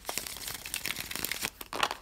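A deck of cards being shuffled by hand: a steady run of soft card-edge flicks and rubbing, with a few sharper clicks near the end.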